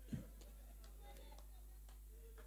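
A quiet pause over a steady low hum, broken by one soft low thump just after the start and a few faint, sharp clicks scattered through the rest, typical of a handheld microphone being handled.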